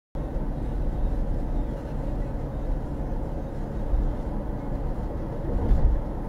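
Car cabin noise: a steady low rumble of engine and road, heard from inside the cabin, with a brief louder swell near the end.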